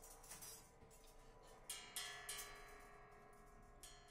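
Quiet free-improvised metal percussion: a few soft strikes, the clearest about two seconds in and just before the end, each leaving ringing, bell-like tones over a faint steady hum.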